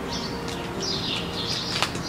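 Small songbirds chirping in a repeated series of short, high, gliding notes, with one sharp click near the end.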